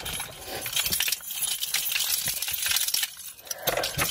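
Close handling noise from the camera being moved against hair and clothing: a dense run of rustling and small clinking clicks, easing briefly about three seconds in.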